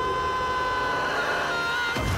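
A man's long, high-pitched scream, held at one pitch and wavering near the end, over a second steady high tone.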